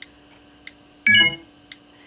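iPod Touch on-screen keyboard clicks as letters are typed: three light, spaced-out ticks. A brief louder noise comes about a second in.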